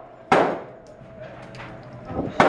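A single pistol shot in an indoor shooting range: one sharp crack about a third of a second in that rings off in the range's echo, followed by a few faint small clicks.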